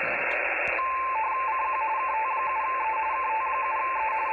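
Radio teletype (RTTY) signal from a Xiegu G90 HF transceiver's speaker: two close tones switching rapidly back and forth, starting about a second in over a steady hiss of band noise. It is a contest station calling CQ.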